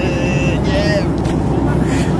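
Steady low engine and airflow noise of a jet airliner's cabin in flight, with a voice trailing off near the start.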